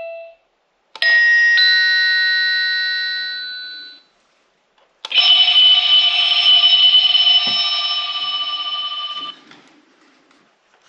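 SilverCrest wireless doorbell receiver playing its electronic ringtones in turn. The tail of one chime dies away just after the start. A two-note chime sounds about a second in and fades over about three seconds. Then a louder, pulsing electronic tone starts about five seconds in and holds for about four seconds before cutting off.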